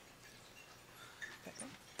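Near silence: quiet room tone, with a few faint brief sounds in the second half.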